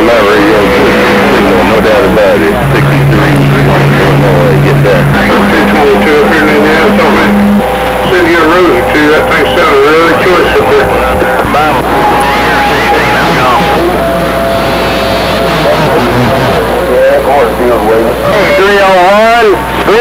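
CB radio receiving distant stations: several garbled, hard-to-make-out voices talking over one another, with steady whistling tones at a few different pitches that come and go every few seconds, and a warbling, swooping tone near the end.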